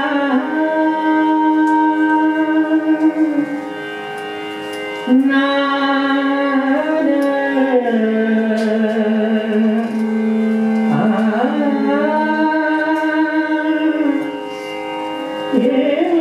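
Hindustani classical female voice singing raag Bairagi Bhairav in slow phrases of long held notes that bend from pitch to pitch, with a harmonium sustaining and following her line. The voice stops briefly twice, a little after four seconds and again near the end, leaving the harmonium sounding alone.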